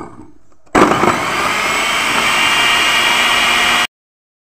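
Electric mixer grinder running, grinding chopped onion and tomato into a paste. It starts suddenly just under a second in, runs steadily with a high whine, and cuts off just before the end.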